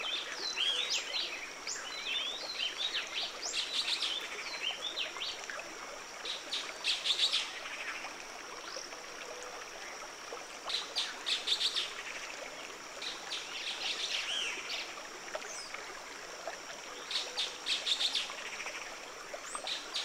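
A racket of many birds calling at once, an intense cacophony of chirps, rapid trills and short whistles, over the soft steady rush of a river running over stones.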